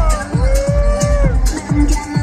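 Live electronic dance music through a festival PA: a steady kick drum about twice a second under one long held note that bends up and back down over about a second.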